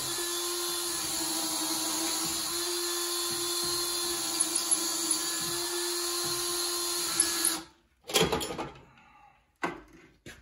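Electric drill running steadily at one speed, boring a hole down through a wooden deck board. It cuts off sharply about three-quarters of the way through, and a loud clatter and then a single knock follow.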